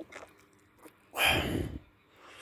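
A man drinking beer: a few faint clicks of the glass, then a loud breathy exhale lasting about half a second, a little over a second in.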